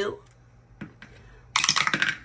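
A die thrown into a wooden dice tray, rattling and tumbling in a quick clatter for about half a second near the end, with a single soft click a little before the middle.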